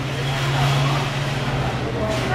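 A steady low mechanical hum over a busy background haze.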